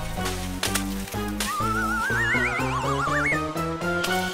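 Playful cartoon background music with short, bouncing bass notes. About a second and a half in, two wobbling tones rise in pitch over it for nearly two seconds.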